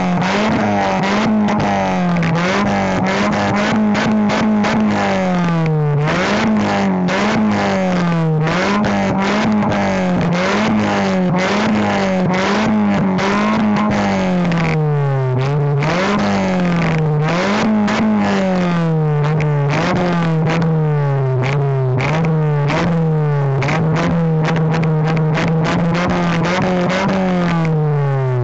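Fifth-generation Honda Prelude's exhaust, recorded at its large aftermarket-style tip, as the engine is revved in repeated blips, the note rising and falling every second or two. The revs hold steadier over the last few seconds.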